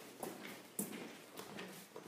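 Footsteps on a hard floor, about four steps at a walking pace of roughly two a second.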